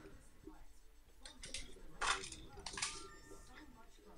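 Quiet handling noise from unboxing: a few short rustles and light clicks as packaging and the items in it are moved about.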